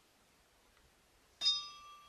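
A single bell-like chime struck about one and a half seconds in, its several clear tones ringing on and fading slowly.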